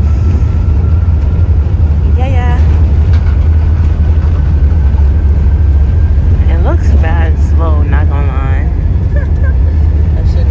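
Steady deep rumble of an airliner's engines and airframe heard inside the passenger cabin while the aircraft rolls along the runway, with brief bits of passenger voices over it.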